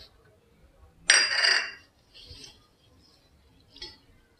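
Water poured from a steel bowl onto moong dal in a steel bowl to wash it, one splashing pour about a second in lasting under a second. Fainter swishing and clinks follow as the dal is stirred by hand in the water.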